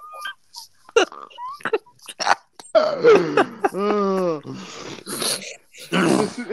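People laughing hard: short breathy gasps and wheezes, then a long laughing cry that falls in pitch about four seconds in.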